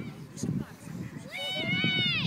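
A distant, high-pitched shout from the pitch side of a youth football match: one long held call that starts about halfway through, rising and then falling in pitch, over faint outdoor field noise.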